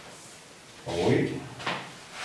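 A man's short murmured vocal sound about a second in, then a brief scratchy stroke of a marker on a whiteboard near the end.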